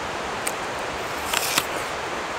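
A person chewing a mouthful of apple, with a few faint crunches, over a steady hiss.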